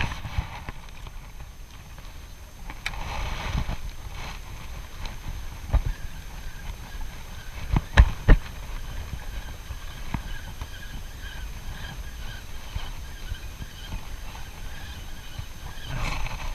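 Casting and reeling in with a spinning rod and reel over open water: a low wind rumble on the microphone, scattered clicks and knocks from handling the rod and reel, and two sharp thumps just after eight seconds.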